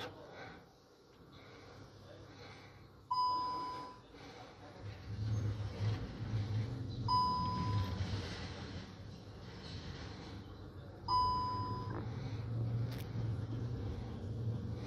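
A short electronic warning beep, about half a second long, repeating every four seconds, three times, from the car with the ignition switched on. A low steady hum runs underneath from about five seconds in.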